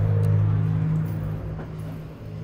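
A low, steady hum that is loud at first, fades over the first second and a half, then carries on quietly.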